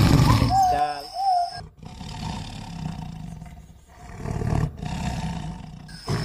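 Lion roaring: a loud low roar at the start, followed by two quieter rumbling roars.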